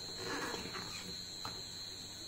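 Paper picture book being closed on a wooden tabletop: a soft rustle of pages and cover, then a single light tap about one and a half seconds in. A faint steady high-pitched whine and mains hum sit underneath.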